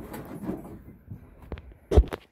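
Faint rustling and a few small clicks, then a single sharp knock just before the end.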